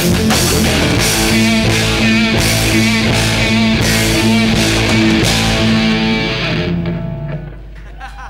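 Live rock band with two electric guitars, bass guitar and drum kit playing a loud instrumental passage without vocals. The drums and cymbals stop a little before the end, and the guitars ring on briefly before fading as the song ends.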